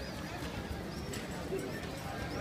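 Indistinct voices over a steady outdoor background noise.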